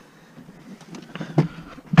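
Someone settling into the driver's seat of a Dodge minivan: small rustles and clicks, a knock about one and a half seconds in, then a loud thump right at the end as the driver's door shuts.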